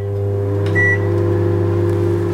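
Microwave oven running: a steady electrical hum, with one short high beep from its keypad about a second in.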